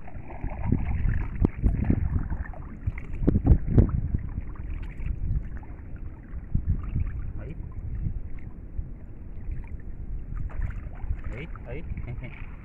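Wind buffeting the microphone over the water sounds of a small boat being paddled, with a few louder knocks or splashes about one and a half and three and a half seconds in.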